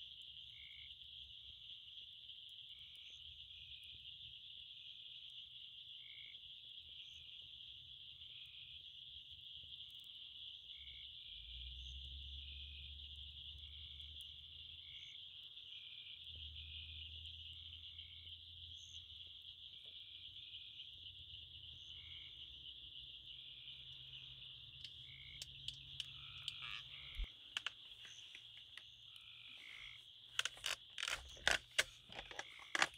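Faint night chorus of frogs: a steady high-pitched trilling drone with many short chirps scattered over it. A few sharp clicks come near the end.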